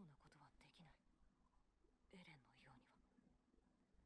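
Near silence with faint, low speech in short phrases, likely the anime's dialogue played back at very low volume.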